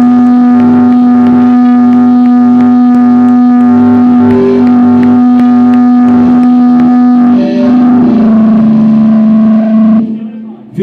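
Loud amplified rock band holding one sustained, droning distorted note, ringing out at the close of a song. Near the end the note drops slightly in pitch and then stops.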